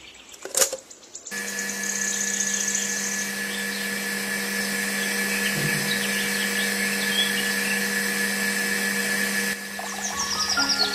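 A plug clicks into a socket, then about a second later a miniature electric water pump starts and runs with a steady hum, pumping water.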